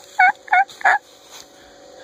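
Domestic turkey calling: a quick run of short, pitched notes, about three a second, that stops about a second in.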